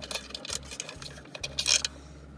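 Small clicks and rustling as USB cables are handled and pulled through the plastic back of a car's center-console charging panel, with a brief louder rustle near the end.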